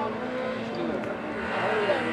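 Renault Clio slalom car's engine running under load, its revs rising and falling as it drives through the course toward the listener, with people's voices mixed in.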